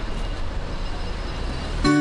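Street noise with a steady low traffic rumble. Near the end it cuts off and music with guitar starts abruptly.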